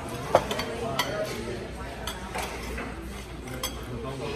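Cutlery clinking and scraping on plates as people eat, a few sharp clinks, the loudest just after the start.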